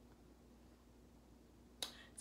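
Near silence: faint room tone, broken by one sharp click near the end.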